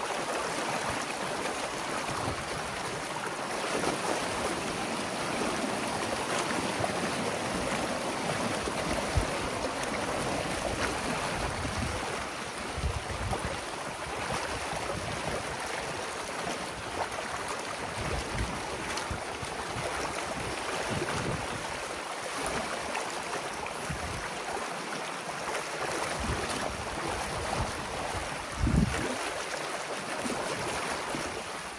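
Water rushing steadily through a breach torn in a beaver dam, the pent-up pond draining through the gap, with a few low thumps, the loudest near the end.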